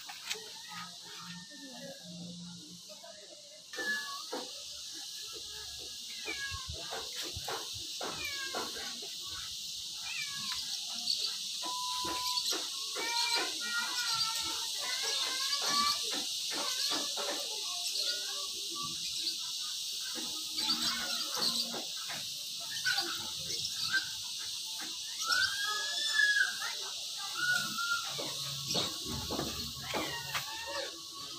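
A steady high insect hum that swells about four seconds in, with short chirping animal calls and scattered clicks and knocks over it.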